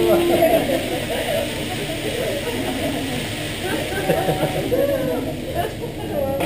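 Indistinct chatter of several people around a hibachi grill table, over a steady hiss of food sizzling on the hot griddle that fades about halfway through.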